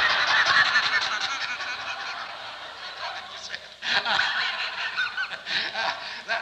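An audience laughing. The laughter dies down, then breaks out again loudly about four seconds in.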